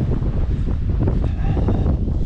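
Wind buffeting the camera microphone: a steady, heavy low rumble.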